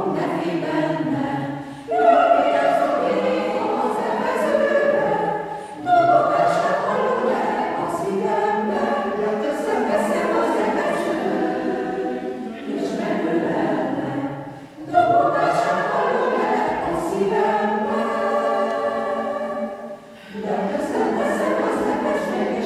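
Mixed choir of men's and women's voices singing a Hungarian choral piece a cappella, in phrases a few seconds long with short breaks between them, each new phrase entering loudly.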